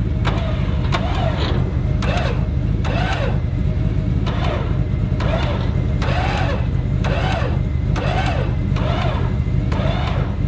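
Tow truck's engine running steadily, with a high squeak that rises and falls in pitch and repeats roughly every three-quarters of a second.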